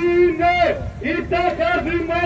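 A man shouting a protest slogan in Greek, in loud, rhythmic, drawn-out syllables of about a third of a second each, as in a march chant.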